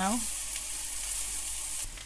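Egg noodles, onion and chicken frying in hot oil in a wok, a steady sizzle as they are tossed with chopsticks. The sizzle stops suddenly near the end.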